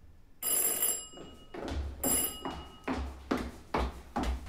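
A doorbell rings twice, the second ring about a second and a half after the first. A few short knocks and thuds follow.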